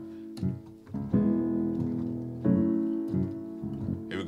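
Piano chords played slowly: a few light notes, then a full chord struck a little over a second in and another at about two and a half seconds, each left to ring and fade.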